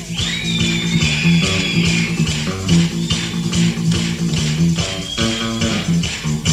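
Live rock band playing: an electric guitar takes a short solo line over bass guitar and a steady drum beat, the guitarist's feature just after he is introduced.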